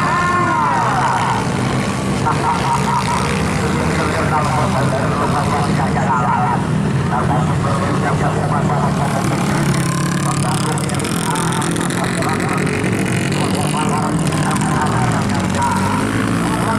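Off-road motocross bike engines revving as riders work the throttle over the jumps, the pitch swooping up and down, over a steady low engine drone.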